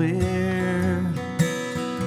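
Live country song with acoustic guitar: a man's voice holds a long sung note over the strummed guitar, ending about a second and a half in, where a sharp strum lands and the guitar rings on alone.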